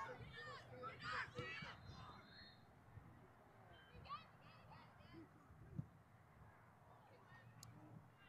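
Distant voices of players and spectators calling across an open field, faint, over a steady rumble of wind on the microphone. A single sharp thump about six seconds in.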